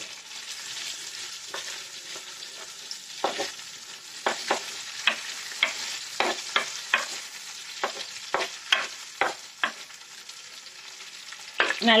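Shallots, garlic and green chillies sizzling in hot oil in a black pot, stirred with a wooden spatula that knocks and scrapes against the pot in a run of quick strokes through the middle. The stirring stops near the end and only the sizzle remains.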